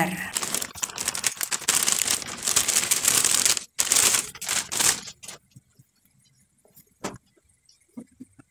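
Plastic bag of wheat flour crinkling and rustling as it is shaken and emptied into a bowl, with the flour pouring out, for about five seconds. Then a few scattered light clicks and taps.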